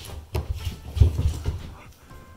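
A Boston terrier puppy making small noises, with a few low thumps of slippered footsteps on a wooden floor, the loudest about a second in.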